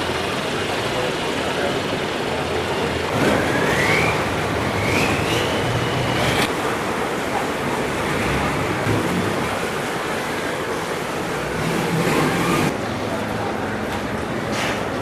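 Steady street traffic noise, with an engine whine that rises about three seconds in, holds, and stops about halfway through.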